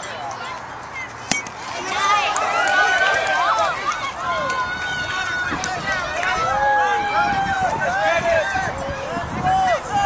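A single sharp crack of a bat hitting a baseball about a second in, then spectators shouting and cheering, with many high, drawn-out calls overlapping.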